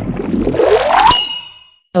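Cartoon magic sound effect: a noisy swell with a rising glide that cuts off about a second in, followed by a bright ding that rings on and fades away.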